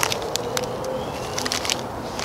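Steady outdoor background hiss with scattered faint clicks and crackles.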